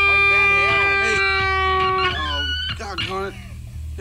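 An electric guitar holds one steady note through an amplifier until about two seconds in, then stops, over a constant low amplifier hum. Voices talk over it.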